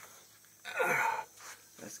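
A man's short breathy sigh, about half a second long, coming about two-thirds of a second in.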